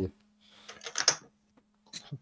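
Computer keyboard typing: a short run of soft keystrokes about half a second to a second in, looking something up on the computer.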